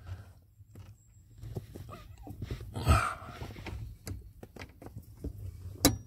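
Small clicks and scuffs of a plastic clutch position sensor being handled and pressed onto the pivot nipple behind a car's clutch pedal, ending in one sharp click as it snaps into place.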